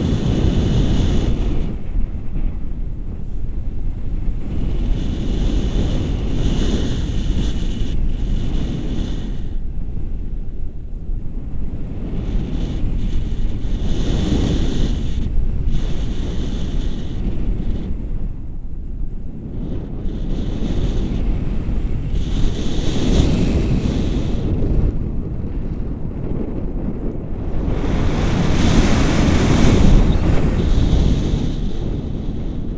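Wind buffeting the microphone of a camera held out from a paraglider in flight: a steady low rumble that swells and eases, loudest near the end.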